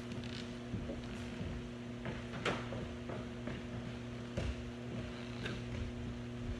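Footsteps and scattered light knocks on a wooden platform, over a steady low electrical hum.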